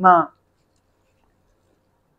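A man's voice finishing a word in the first moment, then near silence: room tone.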